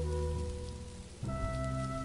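Slow ambient meditation music of long held tones over a soft steady hiss. The music dips briefly, and about a second in a new, higher chord comes in.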